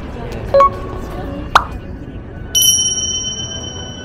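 Subscribe-button animation sound effects: a short pop, a sharp click about a second later, then a bright bell ding that rings out for about a second and a half. Underneath is the steady murmur of a crowded street.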